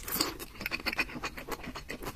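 Close-miked eating: a short rush of noise as food goes into the mouth, then quick, wet chewing clicks and smacks.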